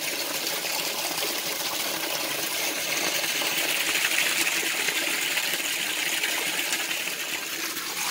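Steady stream of water from a hose pouring and splashing onto the water surface of a plastic water tank as it is refilled with fresh water during a water change.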